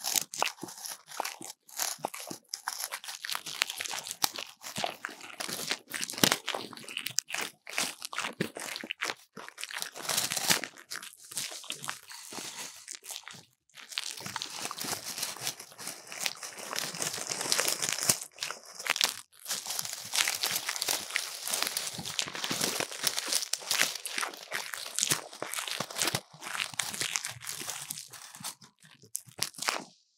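Close-up crinkling and rustling of a dried grass plume and a silver tinsel garland brushed and handled against a binaural microphone. It is a dense stream of small crackles, with a couple of brief breaks in the middle.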